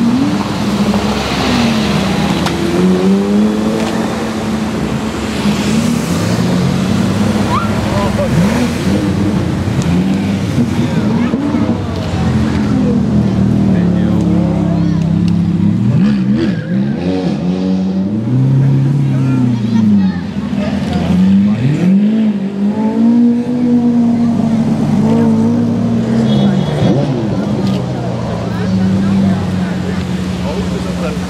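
Supercar engines, a Porsche Carrera GT and then a Lamborghini Aventador, driving slowly past and being revved in repeated blips, the pitch swinging up and down. The revving is strongest in the second half.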